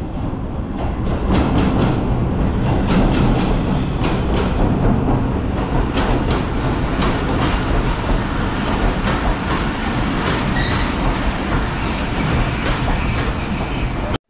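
A diesel-hauled passenger train pulling into a station close by. The locomotive runs past first, then the coaches roll by, their wheels clicking over the rail joints. A thin high wheel squeal comes in about halfway through.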